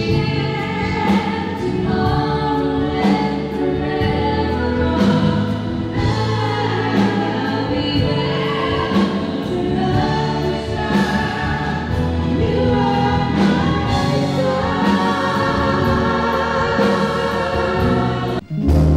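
Two women singing a duet into microphones through a stage sound system, over live instrumental accompaniment.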